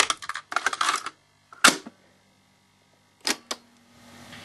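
A plastic cassette being put into the cassette door of a top-loading Intel CD 2100 cassette deck: rattling clicks for about a second and a sharp click, then two quick clicks near the end as the door is shut. A faint steady hum from the deck's transformer is under the quiet gap.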